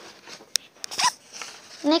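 Sheets of drawing paper rustling, with a few light clicks, as the drawings are handled and shuffled.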